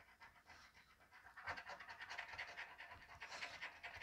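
A coin scratching the coating off an instant lottery scratch-off ticket: faint, rapid back-and-forth strokes starting about a second in.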